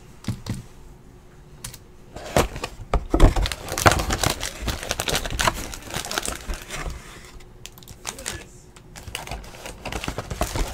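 A cardboard hobby box of trading cards being opened and its foil-wrapped card packs handled: a dense run of crackles, rustles and small knocks that starts about two seconds in and eases off near the end.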